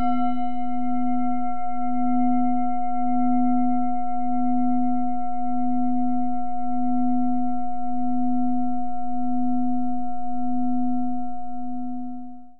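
A singing bowl, struck once, rings out with a low hum that wavers slowly, with higher overtones dying away first; it begins to fade near the end.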